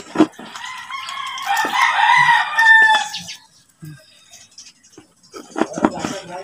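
A rooster crowing once, a long crow of about three seconds that ends on a falling note. A couple of sharp knocks come just before it starts.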